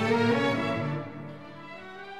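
Orchestral background music with strings and brass, moving between notes and then settling onto a quieter held note about a second in.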